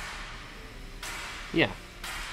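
Faint, even hiss-like noise from a recorded machine-background audio sample being played back. It grows a little louder about a second in.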